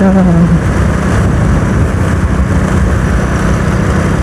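Motorcycle engine running steadily while the bike is ridden along a road, with road and wind rush mixed in. A voice holds a sung note for the first half second.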